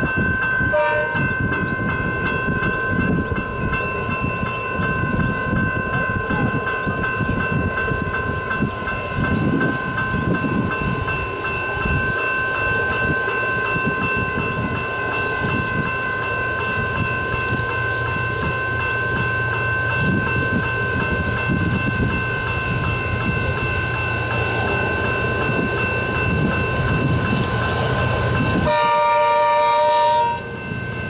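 A diesel locomotive approaching with its engine running under load, while its horn sounds a long, steady chord through most of the stretch. A short horn blast comes about a second in, and a louder blast near the end.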